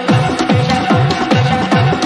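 Hardgroove techno track: a deep kick drum drops back in right at the start and pounds about three beats a second, each hit falling in pitch, under steady held synth tones.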